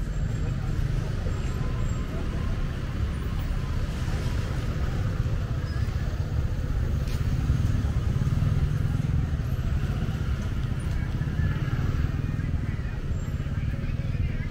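Street ambience: a steady rumble of road traffic, cars and motorbikes passing close by, with no single sound standing out.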